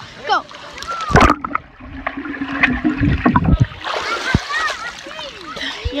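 Pool water splashing as the phone is plunged under, about a second in, then muffled underwater sloshing and gurgling with a few low thuds.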